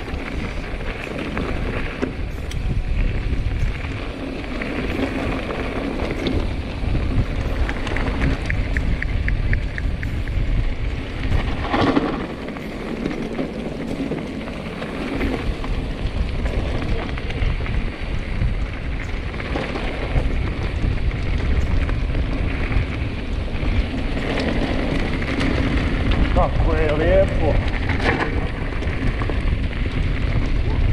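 Mountain bike rolling downhill on a gravel forest track: tyres crunching and crackling over loose stones, the bike rattling over bumps, and wind buffeting the action camera's microphone.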